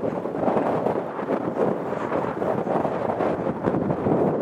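Strong, gusty wind blasting across the microphone: a loud, continuous rush that rises and falls with the gusts.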